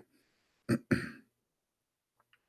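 A man clearing his throat, two short rasps about a second in.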